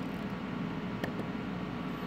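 Steady low hum with a hiss, and a faint click about a second in.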